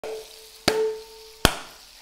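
Stainless-steel mixing bowl knocked twice, about three quarters of a second apart, ringing on briefly with a clear metallic tone after the first knock.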